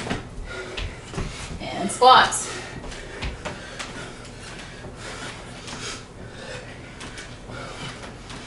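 Shuffling and light knocks of hands, feet and push-up handles on a hardwood floor as two people get up from push-ups into squats. A short, loud vocal call comes about two seconds in.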